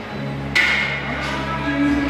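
A single sharp metallic clank about half a second in, ringing on and fading over a second or so, typical of gym weights such as a plate or dumbbell striking metal. Background music plays underneath.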